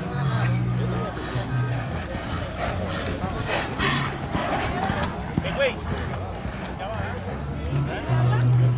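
Indistinct voices of spectators talking, over background music with low bass notes.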